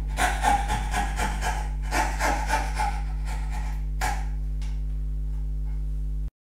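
Jeweller's saw with a fine fret-saw blade cutting out the waste between the fingers of a box joint in a board, a quick run of short strokes that stops about four seconds in. A steady low hum runs underneath.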